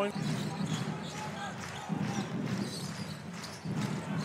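Basketball arena crowd murmur, a steady hum of many indistinct voices in a large hall.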